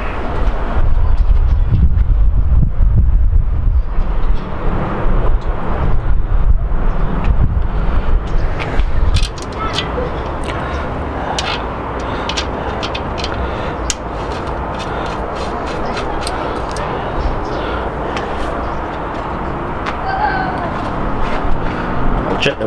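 Outdoor background rumble, heavy for the first nine seconds or so and then a steadier, lower hum, with scattered light metallic clicks as an axle nut is threaded onto a bicycle's rear axle by hand.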